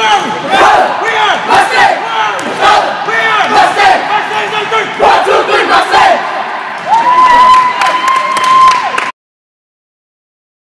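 A group of basketball players shouting and yelling together in a team huddle, with one long held call near the end; the sound cuts off suddenly about nine seconds in.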